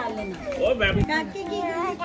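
Adults' voices and a toddler's high-pitched voice in lively family chatter, with a brief low thump about a second in.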